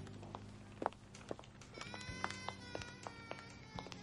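Soft film score with low held notes, joined about halfway by a higher sustained chord, over scattered light clicks and taps.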